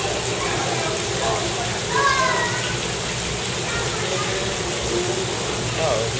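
Steady rushing of water in an alligator exhibit pool, with indistinct voices about two seconds in.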